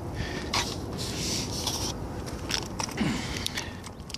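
Gritty scraping and rubbing noises in short patches, with a few sharp clicks, over a steady low rumble: movement and handling noise as the camera is carried around on an asphalt-shingle roof.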